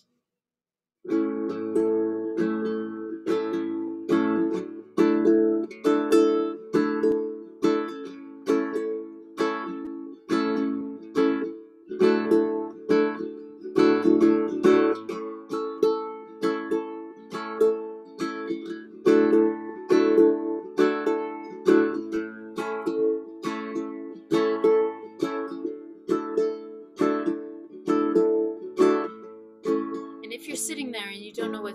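Ukulele strummed, starting about a second in, in a steady rhythm of about two strums a second, with a simple repeating chord pattern and no singing.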